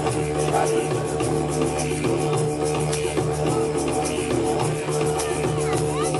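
Didgeridoo holding a steady low drone, with percussion keeping a busy rhythm of quick hits over it.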